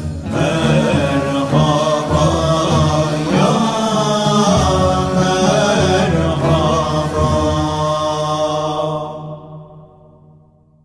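Male voices chanting a Turkish Sufi naat in makam Hüzzam, the melody bending and gliding over a low held note. The singing fades out near the end.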